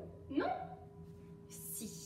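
Mostly speech: a woman says one short word with a rising, questioning pitch, then a short breathy sound near the end, over a faint steady hum.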